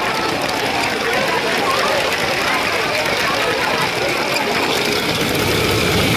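Steady running noise of a Lego train's motor and wheels on plastic track, heard close up from on board, mixed with the chatter of a crowd in a large hall.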